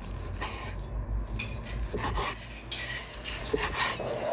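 Kitchen knife slicing through steamed tofu-skin rolls on a wooden cutting board: a series of short, separate cutting strokes as the blade goes through the layered skin and filling.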